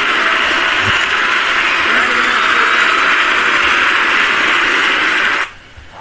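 A steady, loud hiss like radio static that cuts off suddenly about five and a half seconds in.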